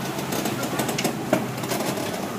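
Game-fishing boat's engine running at slow ahead, a steady rumble mixed with water washing at the stern, with a couple of short knocks about a second in.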